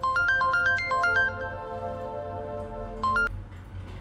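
Mobile phone ringing with a melodic ringtone: a quick run of bright stepped notes, then held notes, then the tune starts over about three seconds in and cuts off suddenly as the incoming call is answered.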